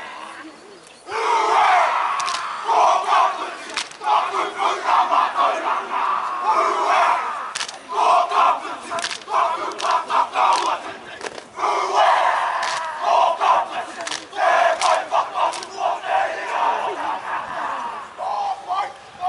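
A rugby team performing a haka: many male voices shouting the chant together in loud, rhythmic bursts, starting about a second in.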